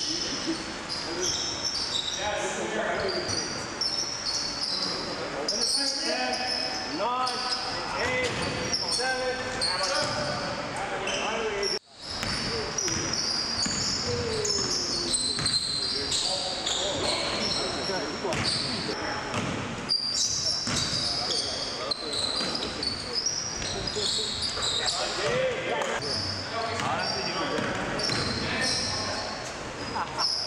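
Live sound of an indoor basketball game: sneakers squeaking on the gym floor, the ball bouncing and players calling out, all echoing in a large hall. The sound cuts out briefly about twelve seconds in.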